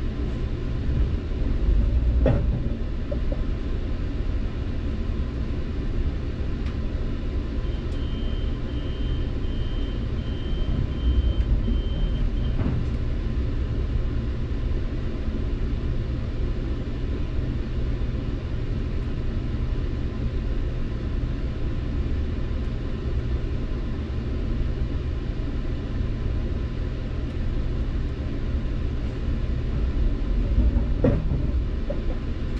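Steady low rumble of a stationary Metrolink commuter train with its diesel power idling, heard from inside the passenger coach. A high pulsing beep sounds for about five seconds near the middle, and there are a couple of knocks.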